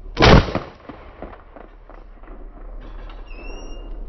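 A single shotgun shot from an over-and-under shotgun fired at a flying clay target. It is a sharp report just after the start, with a short echo trailing off over about half a second.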